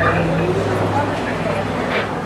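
A steady low mechanical hum runs under indistinct voices of people talking.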